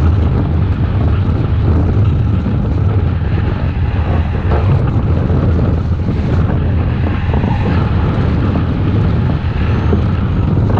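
Airflow over the glider-mounted camera's microphone during hang glider flight: a loud, steady wind rush, heaviest in the low end.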